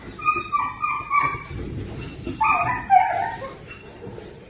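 A dog whining and yipping in short, high cries that fall in pitch, in two bouts: one just after the start and another about two and a half seconds in.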